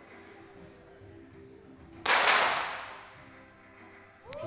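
A .22 sport pistol shot: one sharp crack about halfway through, followed by a reverberant tail that dies away over about a second.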